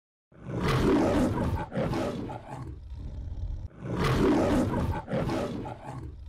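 Lion roaring twice, the MGM studio-logo roar: two long, rough roars of about two seconds each, with a short pause between them.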